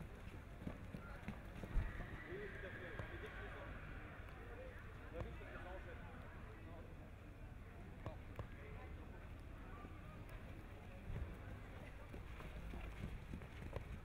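A young horse trotting in hand on grass, its hoofbeats muffled, over a background murmur of crowd voices; one louder thump about two seconds in.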